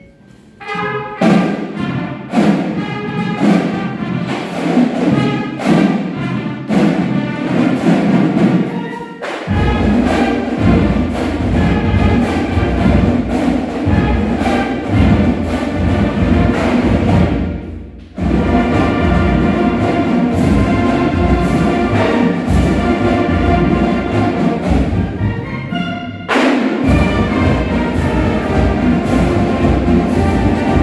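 A full marching band of flutes, brass and drums playing together in a gymnasium. The music starts about a second in, and a deep low end joins about nine seconds in. It breaks off briefly twice, near the middle and again a few seconds before the end.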